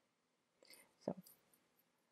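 Near silence: room tone, broken by a soft spoken "so" about a second in.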